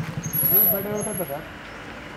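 People talking, with a vehicle engine running underneath the voices; the talk is loudest about half a second in.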